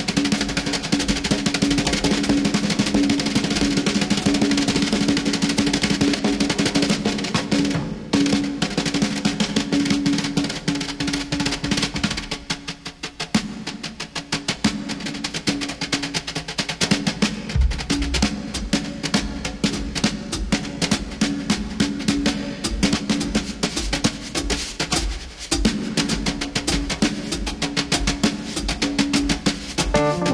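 Drum kit played with wire brushes: a fast, dense run of strokes on the snare, with bass drum hits underneath. There is a brief break about eight seconds in and a softer passage around thirteen seconds before the full playing returns.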